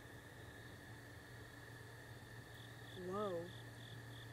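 Night chorus of insects and frogs: a steady high drone with a rhythmic chirp about three times a second over a low steady hum. About three seconds in, a person gives a short wavering hum.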